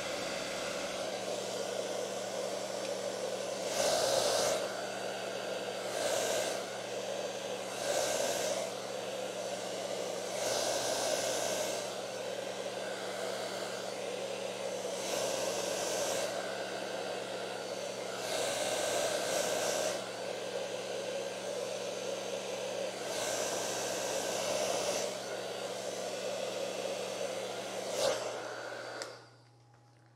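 Hair dryer blowing air onto wet alcohol ink on a linen panel, running steadily with a hum. It swells louder every couple of seconds, then is switched off about a second before the end.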